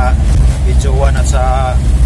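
Steady low rumble of a moving vehicle heard from inside its cabin, with a man's voice speaking briefly over it.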